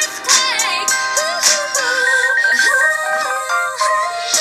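Electronic pop music: bright synthesizer lines, some sliding in pitch early on and others held steady, with no sung lyrics in this stretch.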